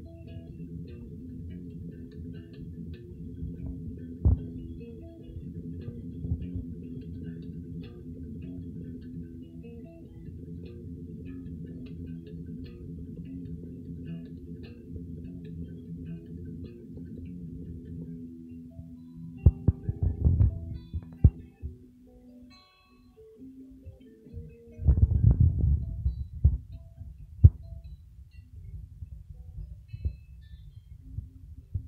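Les Paul-style electric guitar played through an amplifier over a steady, low, throbbing layer of music. Louder struck chords come around twenty seconds in and again about twenty-five seconds in, with a brief lull between.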